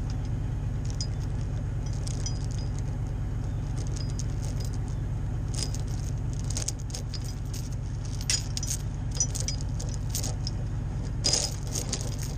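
A bucket truck's engine runs with a steady low drone while a steel log chain with yellow grab hooks clinks and rattles against itself as it is handled around the logs. The clinking grows busier in the second half, with a burst of sharper clanks near the end.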